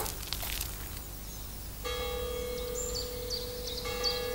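Faint ambience, then about two seconds in a bell-like tone starts suddenly and holds steady without fading, with short high chirps like birdsong over it.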